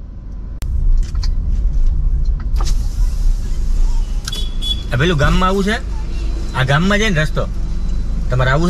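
Steady low rumble of a car's engine and road noise heard inside the cabin, starting suddenly about half a second in, with a few sharp clicks in the first three seconds. A man's voice speaks in short bursts over it from about five seconds in.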